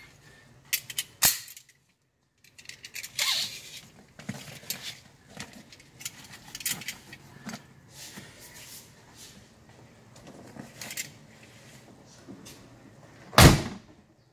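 Lap seat belt webbing and its metal buckle being handled, giving scattered clicks, rattles and rustles, with one loud thump near the end.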